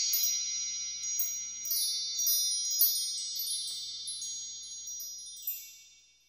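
Intro jingle of shimmering chimes: a high, bell-like chord rings on under repeated twinkling strikes and slowly fades away near the end.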